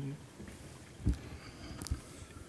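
Quiet room tone in a lecture hall, broken by two short low thumps: one about a second in and a sharper one near the end.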